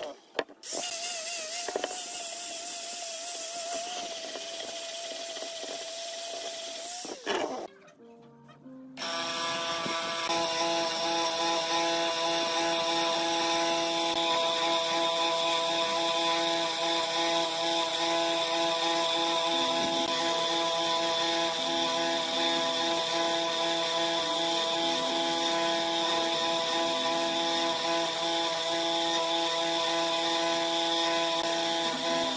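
An angle grinder with a buffing pad running with a steady whine, which stops about seven seconds in. After a short lull, an electric bench motor turns a wire wheel steadily, with a whine of several held tones, as a wire spoke is brushed clean against it.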